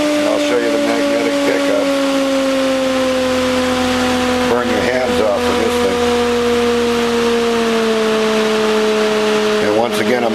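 Bedini-Cole window motor running, giving a steady hum with a few clear tones that drift slowly lower in pitch, as the rotor gradually slows.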